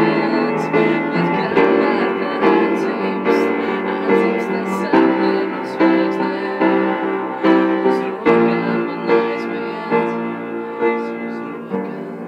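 Upright piano played by hand: chords with sustained notes, a new chord struck at a steady pace of about one a second.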